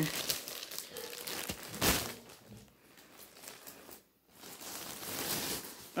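Clear plastic packaging bag crinkling and rustling as it is handled and pulled open, with a louder crackle about two seconds in.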